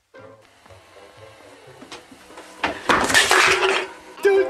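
Faint cartoon soundtrack music, then a loud crash about three seconds in that lasts about a second.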